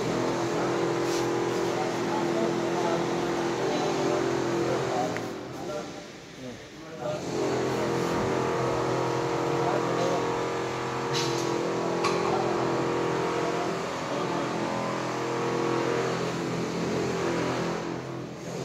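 Industrial machinery running with a steady hum of several held tones. It dips briefly about six seconds in, then comes back at the same pitch.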